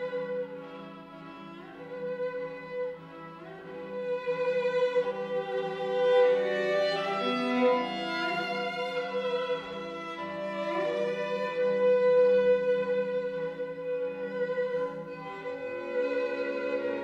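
A string quartet, two violins, viola and cello, playing slow, sustained chords that grow louder about four seconds in.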